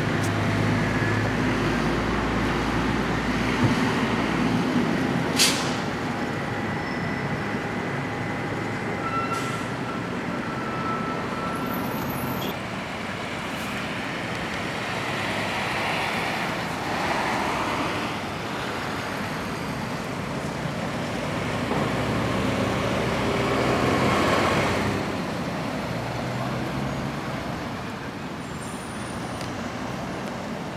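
Road traffic: motor vehicles passing on a nearby street, a steady rush of noise with low engine hum that swells near the start and again about twenty-four seconds in. A single sharp click about five seconds in.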